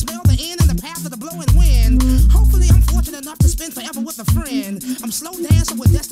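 Hip hop track with a rapper delivering a verse over the beat. A deep bass note comes in about a second and a half in and holds for about a second and a half.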